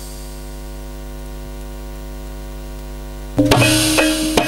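Steady electrical mains hum from the sound system, a low buzz with many even overtones. About three and a half seconds in, loud percussion music with drums starts suddenly, the accompaniment for the traditional kuda lumping horse dance.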